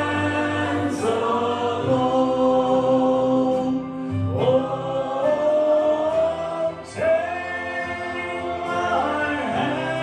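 Gospel hymn singing led by a man on a microphone, with group voices joining. Long held notes that slide into each new note, over steady, sustained low accompaniment.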